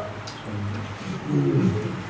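A man's low, wordless voice, held and wavering in pitch, from about half a second in to near the end.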